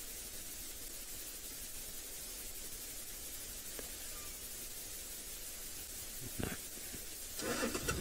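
Steady low rumble with hiss, background noise of an open game drive, with no distinct event. A voice begins near the end.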